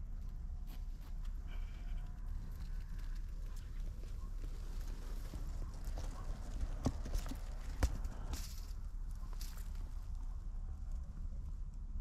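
Low, steady wind rumble on the microphone, with scattered light knocks and clicks from handling among dry reeds; the two loudest knocks come about a second apart a little past the middle.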